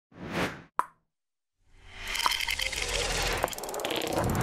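Sound effects for an animated logo intro. A short swell and a single sharp pop come in the first second, then a pause. From about two seconds in, a dense, crackling swell builds, with a few sharp clicks in it.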